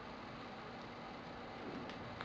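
Quiet room tone: a faint, steady hiss with a low hum and no distinct event, apart from one faint click near the end.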